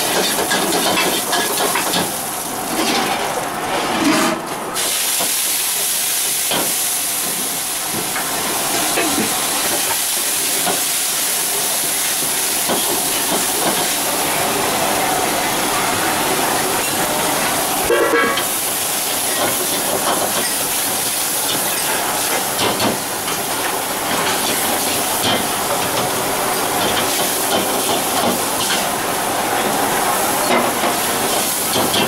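Steady hiss of a gas burner flame under a steel wok, with a metal ladle clinking and scraping in the wok as spinach curry is cooked.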